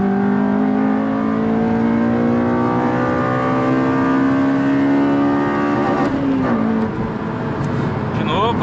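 Honda Civic Si's four-cylinder i-VTEC engine, heard from inside the cabin, pulling at full throttle in third gear with VTEC engaged, its pitch climbing steadily. About six seconds in the pitch falls sharply and settles lower.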